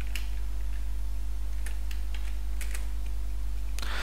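A handful of scattered keystrokes on a computer keyboard, typing a short piece of code, over a steady low hum.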